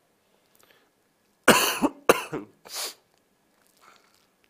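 A man coughing three times in quick succession.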